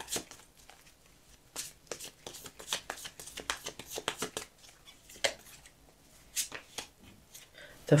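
A Light Seer's Tarot deck being shuffled by hand: an irregular run of soft card clicks and flutters, with a few short pauses.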